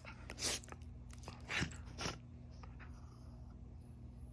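A Scottish terrier puppy and a West Highland white terrier play-fighting with their mouths: three short noisy dog sounds in the first two seconds.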